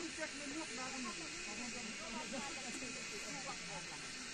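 A steady hiss with the faint chatter of several distant voices.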